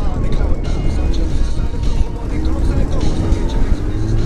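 Motorcycle inline-four engine of a Yamaha Diversion pulling under acceleration, a deep steady rumble with its note rising more than once as the bike speeds up.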